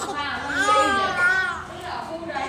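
A baby's voice: a drawn-out, wavering, high-pitched vocalization from about half a second to a second and a half in, as the infant strains at rolling over.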